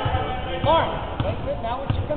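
Basketball dribbled on a hardwood gym floor, a few separate bounces, with voices calling out over it.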